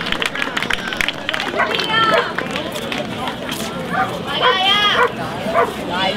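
Audience applause dies away in the first second, followed by two long, high-pitched cries about two and four and a half seconds in, over crowd noise.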